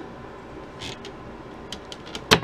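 Dehumidifier running steadily in the background, with a brief scrape and a few light clicks near the end.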